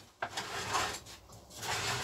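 A heavy step-down transformer box scraping and rubbing across a wooden workbench as it is turned around, in two stretches.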